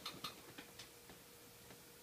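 Near silence: room tone with a few faint clicks in the first second and a faint steady hum.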